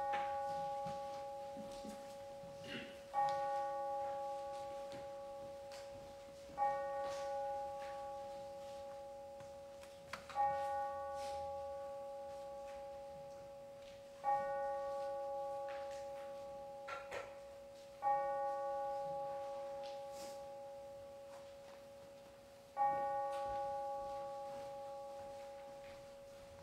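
A bell struck seven times, one stroke every three to four seconds, each stroke ringing on the same note and dying away slowly before the next. A few small knocks can be heard between the strokes.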